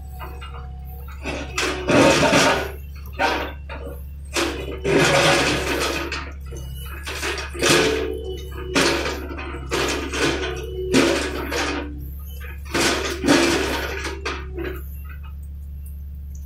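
A John Deere 50D compact excavator's engine runs steadily while its bucket digs into dirt and broken concrete, with about a dozen loud bursts of scraping and clattering rubble.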